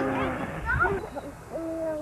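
Young children laughing and calling out, ending in one held, steady vocal note near the end.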